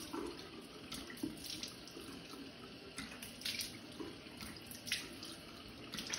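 Bathroom faucet running into a sink while water is splashed onto a face from cupped hands, with a few brief louder splashes among the steady flow.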